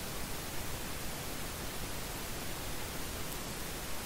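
Steady background hiss with no other distinct sound: recording noise from the narrator's microphone during a pause in speech.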